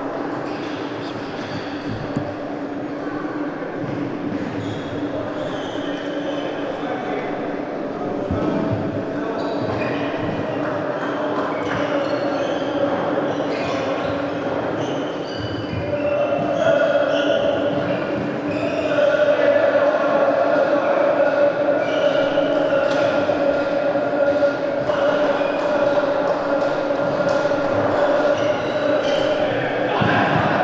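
Table tennis hall ambience: indistinct voices and scattered clicks of ping-pong balls bouncing off tables and bats, over steady humming tones that grow louder about halfway through.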